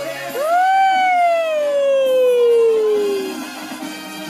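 A toddler's single long crying wail. It rises sharply, then slides slowly down in pitch for about three seconds, over background music.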